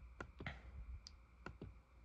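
A handful of faint, sharp clicks a fraction of a second apart, typical of a laptop touchpad or mouse button being clicked to move through an on-screen e-book.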